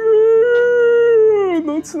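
A man's voice drawing out one long mock howl, held high and then sliding down about a second and a half in.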